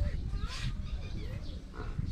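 Faint outdoor ambience: birds chirping over a low, steady rumble.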